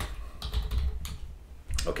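Typing on a computer keyboard: a run of keystrokes entering a short phrase, over a steady low hum.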